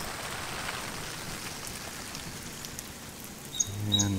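Steady hiss and patter of an overhead garden sprinkler's water spray falling on leaves and the ground, with faint scattered ticks.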